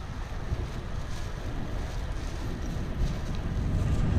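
Wind buffeting the microphone over the low rumble of road traffic passing, growing louder near the end.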